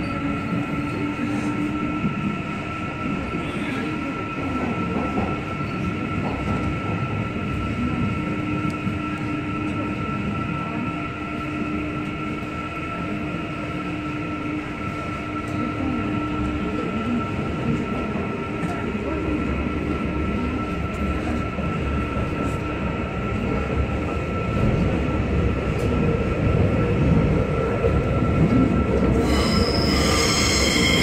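Busan Metro Line 1 subway train running through the tunnel, heard from inside the car: a continuous rumble of wheels on rail with a steady high-pitched whine over it. The running noise grows louder in the last few seconds, and a set of higher steady tones comes in right at the end.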